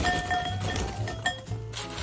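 Background music with a steady bass line over crunchy snack sticks poured into a glass bowl, rattling and clinking against the glass. One louder clink comes just past a second in.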